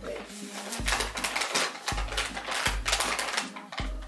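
Background music with a steady bass beat about once a second and many sharp clicks over it.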